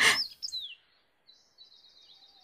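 A small bird chirping: a brief noisy burst and a few short, sliding high chirps at the start, then a faint, rapid trill of repeated high notes near the end.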